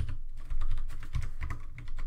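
Computer keyboard typing: a quick run of key clicks with soft thuds.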